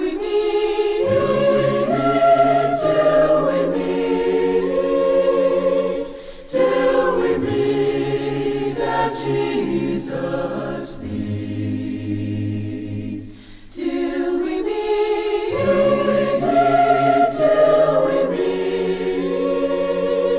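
A choir singing a hymn unaccompanied in several-part harmony, with long held notes in phrases that break off briefly about six and fourteen seconds in.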